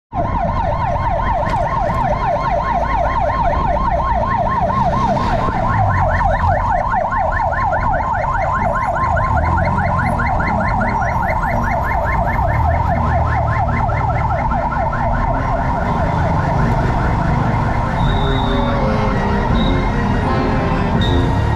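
Emergency vehicle siren on a rapid yelp, sweeping up and down about four times a second, fading out after about sixteen seconds. Underneath is the low rumble of the motorcycle's engine and street traffic.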